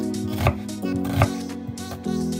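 Chef's knife cutting through an onion onto a wooden cutting board, two strokes about three-quarters of a second apart, over steady background music.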